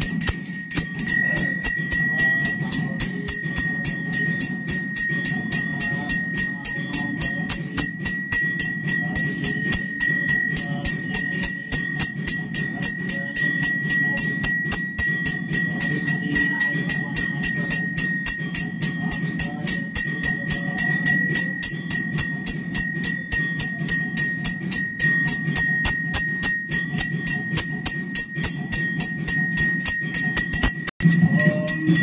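A puja bell rung rapidly and without pause, about four or five strokes a second, ringing on one steady high tone throughout the lamp aarti, with a steady low hum beneath.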